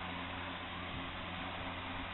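Steady hiss with a faint low hum: background noise, with no distinct sound standing out.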